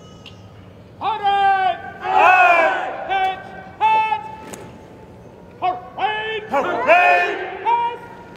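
Shouted military drill commands, drawn out and falling in pitch at the end, called in a series of about six calls, some overlapping as other voices repeat them.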